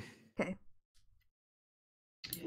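A person's voice, one short utterance about half a second in, then near silence.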